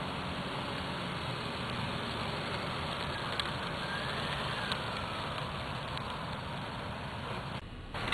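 A car driving at a distance, heard under a steady hiss; a faint tone rises and then falls about midway as it moves.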